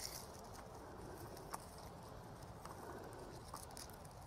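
Faint rustling and pattering of loose soil as hands handle a freshly dug dahlia tuber clump, with a couple of light ticks.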